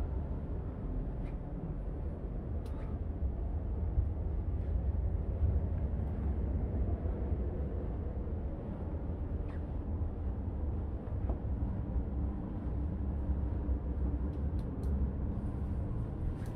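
Steady low rumble of a yacht's cabin air conditioning running, with a few faint clicks.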